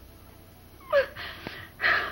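A woman crying: a sharp voiced sob about a second in, followed by breathy gasping and another gasp near the end.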